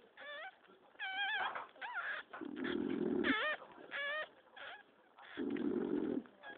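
Newborn puppies whimpering and squealing in a string of short, high, wavering cries, with two muffled bursts of noise between them.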